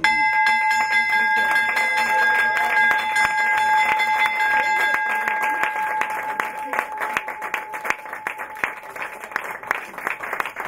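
Brass stock-exchange closing bell struck by its rope and clapper, ringing out with a steady tone that fades away over about six seconds. Applause from a small group runs under it and carries on after the ringing has died.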